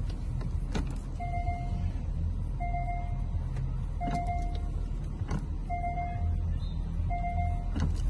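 Porsche Macan S Diesel's 3.0-litre V6 diesel idling with a steady low rumble, while an electronic warning chime sounds five times, one steady tone roughly every second and a half. A few sharp clicks fall between the chimes.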